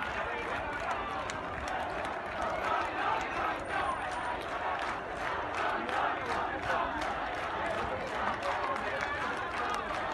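A large crowd of protesters, many voices shouting and talking over one another without a break.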